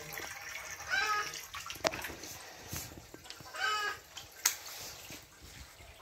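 Water sloshing and trickling in a concrete fish tank. Two short, high-pitched animal calls stand out about one and four seconds in, with a couple of sharp clicks.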